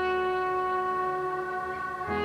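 Stage keyboard playing a sustained brass-like chord, held steady through and easing off slightly near the end, as a worship song begins.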